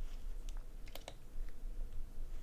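A few faint computer mouse clicks, about four of them, spread over the first half of the two seconds, over a low steady room hum.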